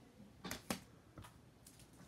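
A few faint clicks and taps of trading cards in hard plastic holders being handled: two sharp clicks close together under a second in, the second the loudest, then a softer tap.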